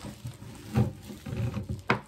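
Quiet rustling and handling of product packaging, a few soft scuffs with one sharp click shortly before the end.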